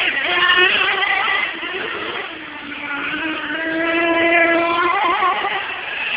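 1/8-scale radio-controlled late model race cars running laps on a dirt track, their motors whining. The pitch and loudness drop off about two seconds in, then climb back and hold as the throttle opens again.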